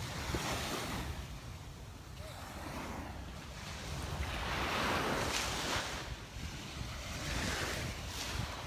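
Small Gulf waves breaking and washing up the sand in slow swells, loudest about five seconds in, with wind rumbling on the microphone throughout.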